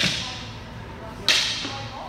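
Two sharp cracks of single sticks striking, about 1.3 seconds apart, each with a short echo from the hall.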